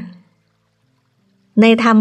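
A woman speaking Thai trails off, then there is about a second and a half of near silence before her speech resumes near the end.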